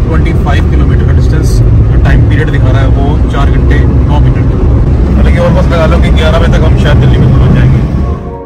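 Car cabin noise at highway speed: a loud, steady low rumble of road and engine noise heard from inside the moving car, with voices talking over it.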